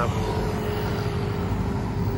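Road traffic: a car driving along the street, heard as a steady low rumble with a faint steady hum.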